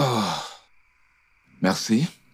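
A man's voiced sigh, a drawn-out "ahh" falling in pitch, as he lowers a glass of liquor after a sip. A second, shorter breathy vocal sound follows near the end.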